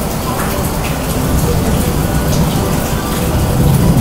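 Heavy rain falling steadily, a dense even hiss with a low rumble underneath.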